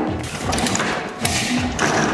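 Hollow plastic thumps and knocks from a plastic ride-on toy car as its wheels and hubcap are fitted and the car is handled, over background music.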